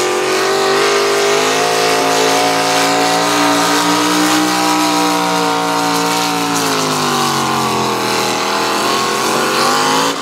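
Econo Rod pulling tractor's engine running hard at high revs under load while dragging a weight-transfer sled down a dirt pull track. The revs sag about seven seconds in as the sled bogs it down, then pick back up near the end.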